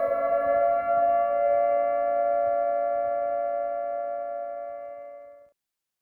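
A held electronic siren-like tone with several steady overtones, level in pitch, fading away over about five and a half seconds.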